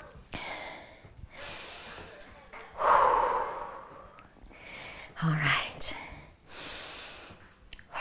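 A woman breathing hard after an exercise set: a string of deep, audible breaths. The loudest comes about three seconds in, and a short voiced sound follows a little after five seconds.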